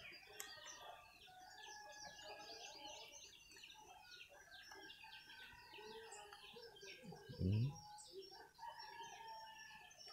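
Faint background of many birds chirping steadily, short calls overlapping one another.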